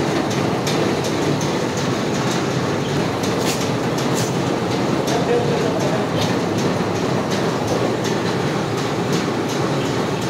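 Machinery of a truck-mounted borewell pipe-lifting rig running steadily, with frequent metallic clicks and rattles as the column pipe is handled in the well casing.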